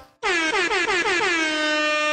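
A single horn-like note from a closing logo sting. It starts about a fifth of a second in with a quick wavering in pitch, then holds one steady tone.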